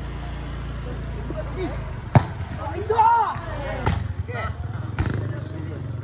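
A volleyball being struck by players' hands and forearms during a rally: three sharp hits, the loudest about two seconds in and two more around four and five seconds, with players' shouts between them.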